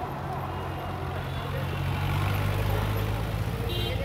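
Street traffic: a vehicle engine running close by with a steady low hum that swells as it passes, and a short high beep near the end.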